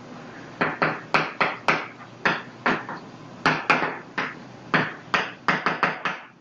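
Chalk writing on a blackboard: a quick, irregular run of sharp chalk taps and strokes, starting about half a second in, over a dozen in all.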